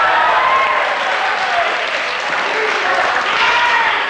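Wrestling crowd clapping and shouting together, a steady din of many voices over applause.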